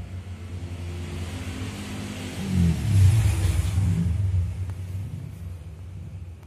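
A motor vehicle passing by: a low engine rumble that swells about two and a half seconds in, peaks for a couple of seconds, then fades away.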